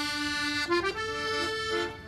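Film score music: a reedy, accordion-like melody of held notes that steps to new pitches a few times, most of them around the middle.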